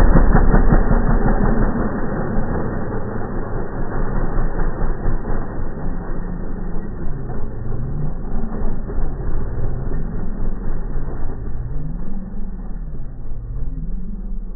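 Dirt bike engine revving under load as the bike climbs a steep slope. It is loudest at first and grows fainter as the bike rides away, its pitch rising and falling with the throttle.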